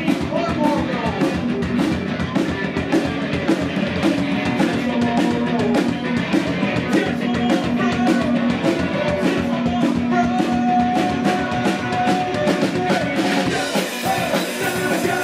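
A live band playing a rock song with drum kit, electric guitar, accordion and fiddle: a steady drum beat under long held melody notes.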